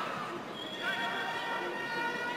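Players' shouted calls ringing across the pitch of a near-empty stadium, long held cries with a quick upward bend about a second in.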